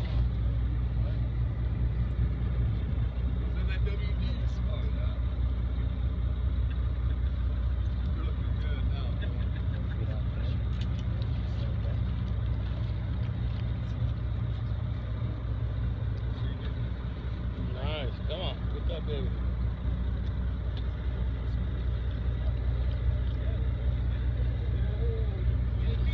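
Steady low rumble of a fishing boat's engine running throughout, with brief distant voices in between.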